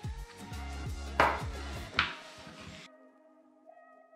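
Background music with a bass line and a beat, with two sharp hits near the middle. It cuts out abruptly about three seconds in, leaving only faint held tones.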